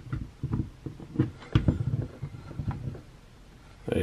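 Plastic action figure being stood up on a tabletop: a series of light knocks and taps as its feet are set down and shifted into place. The knocking stops about three seconds in.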